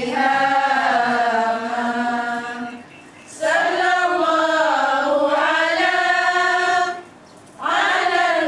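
A group of women chanting in unison from their texts, in long, slowly moving held phrases, broken by two short pauses about three seconds in and again about seven seconds in.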